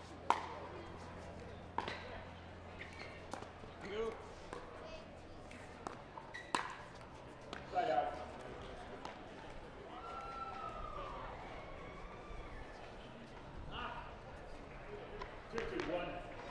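Pickleball paddles hitting a plastic pickleball during a doubles rally: a string of sharp pops spaced irregularly, a second or more apart. Faint voices from the players or crowd come in between.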